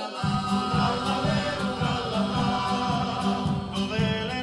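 Male choir singing a folk song in harmony. An acoustic guitar accompaniment comes in just after the start with a steady strummed rhythm under the voices.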